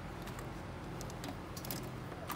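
Light clicks and rattles of pens being handled in a plastic shelf basket, in short scattered bursts that are busiest in the second half, over a low steady background hum.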